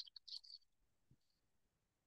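Near silence, with a few faint short clicks in the first half second.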